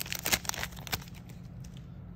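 Foil booster-pack wrapper crinkling and tearing as it is ripped open by hand, a quick run of sharp crackles in the first second that then dies down.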